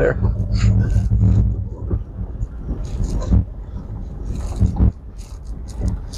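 Jeep Commander driving on a rough dirt forest road, heard from inside the cabin: a steady low engine and tyre rumble, heaviest in the first couple of seconds and easing after, with scattered short knocks and rattles from the rough surface.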